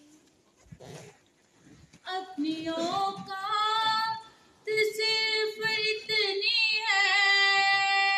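A single voice singing long, drawn-out notes with ornamented bends in pitch. It comes in about two seconds in, after a quiet pause.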